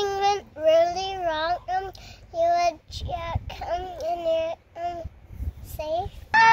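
A young girl singing in a high voice, short wordless phrases with held, wavering notes and brief pauses between them.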